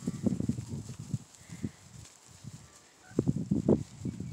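Sheep grazing right by the microphone: irregular low scuffing and tearing as they crop grass, in a cluster at the start and a louder one near the end.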